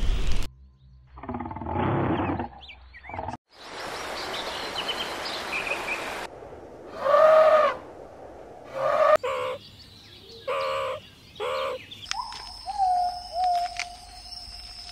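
A run of separate wildlife sound clips: thin bird chirps over a background hiss, then several short pitched animal calls a second or so apart, and a held whistle-like tone near the end.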